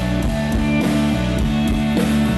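Live rock band playing, with electric guitars to the fore, in a passage between sung lines.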